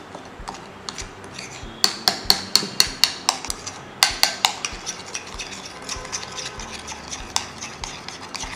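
Metal spoon stirring a thick paste in a glass bowl, clinking against the glass in quick runs of sharp taps, several a second. The clinks are loudest from about two to three seconds in and again around four seconds in, then grow softer.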